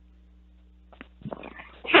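A pause on a telephone line: a steady low hum, then about a second in a click and a man's hesitant "uh" in the narrow, thin sound of a phone call, building into speech near the end.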